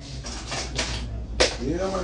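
A few scratchy rustles, then one sharp click or knock, followed near the end by a man's voice starting up.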